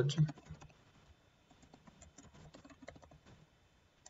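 Typing on a computer keyboard: a quick, uneven run of keystrokes that thins out shortly before the end.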